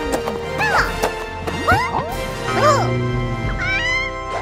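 Background music under short, high, rising and falling vocal sounds from cartoon characters.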